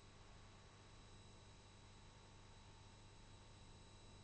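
Near silence: room tone with a faint steady hum and several thin steady high tones, unchanging throughout.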